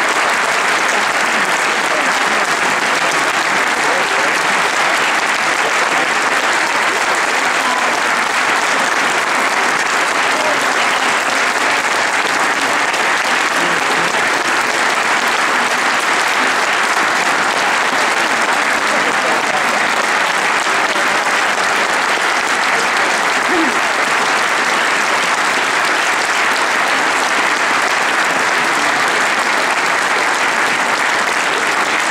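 A large audience clapping in a long, steady, dense round of applause.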